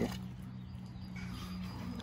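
A faint call from poultry a little past a second in, over a low steady hum.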